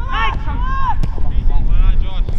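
Men shouting across a soccer pitch during play, over a steady low rumble of wind on the microphone. A single sharp knock comes about a second in.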